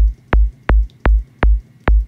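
A synthesized kick drum from a sine oscillator in the Vital synth, its pitch swept down fast by a ramp-shaped LFO, hits about two and a half times a second. Each hit is a quick falling click that drops into a deep, low sub body.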